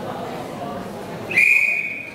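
A whistle blown once, a single steady high note lasting about a second, coming in about a second and a half in over murmuring voices.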